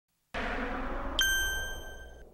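A rushing noise, then about a second in a single bell-like ding that rings on and fades away: a TV title-card sound effect.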